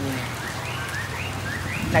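Steady rain falling, with a low steady hum underneath and a run of short rising chirps from about half a second in.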